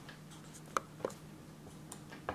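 Glossy photobook page being turned by hand: faint paper rustling with two light, sharp taps about a second in.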